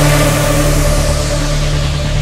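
Techno track in a breakdown: the kick drum drops out and a sustained deep bass drone holds under a wash of noise that slowly darkens.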